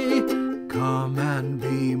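Ukulele strummed in a steady rhythm, with a man's singing voice coming back in about a second in.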